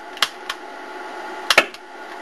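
Small sharp pops of oxyhydrogen (HHO) gas from an electrolysis generator igniting as it bubbles out of a water container under a lighter flame: several separate cracks, the loudest two close together about one and a half seconds in. The pops show that the gas is combustible hydrogen-oxygen mix.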